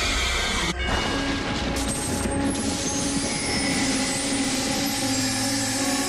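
A dramatic soundtrack: a steady rushing, rumbling noise under eerie music, with sustained tones building and a low drone coming in near the end.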